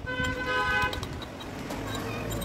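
A vehicle horn sounds once, a steady pitched note lasting just under a second.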